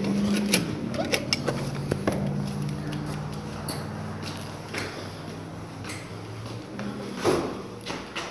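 Footsteps and a door: scattered clicks and knocks as a person goes through a church door and climbs a short flight of stairs, with one louder knock near the end.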